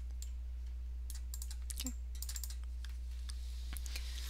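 Computer keyboard keys and mouse buttons clicking in short irregular clusters, over a steady low electrical hum.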